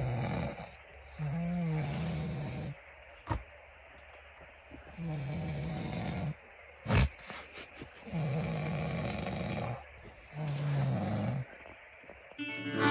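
A man snoring in his sleep: four long, pitched snores a few seconds apart. Two short sharp clicks fall between them.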